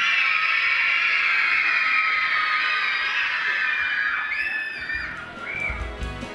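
A crowd of children screaming together, one long high-pitched shout lasting about four seconds that then fades. Near the end, music with a steady beat comes in.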